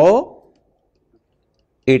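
Speech: a man lecturing trails off in the first half second, then a silent pause of more than a second, and his voice starts again near the end.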